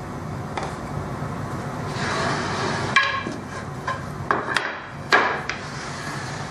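Pencil scratching on walnut, then several sharp wooden knocks as walnut rails are picked up and set down on a perforated MDF work table.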